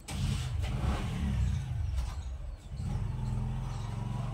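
A low engine rumble that starts suddenly, runs steadily and dips briefly near the three-second mark.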